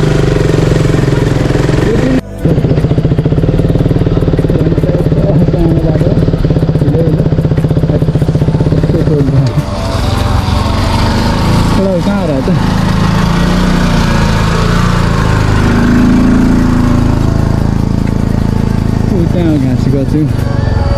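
Motorcycle engine running steadily while riding, with a brief break about two seconds in. About halfway through, the engine note drops lower and becomes less even.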